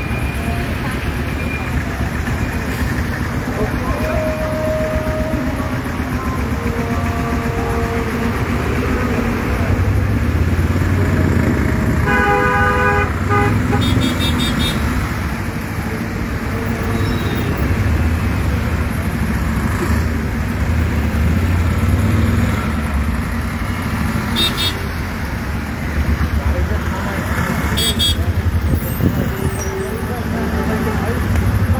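Traffic in a standstill jam: a continuous low rumble of idling truck and bus engines. A vehicle horn sounds for about a second and a half about twelve seconds in, and shorter, higher beeps follow later, over indistinct voices.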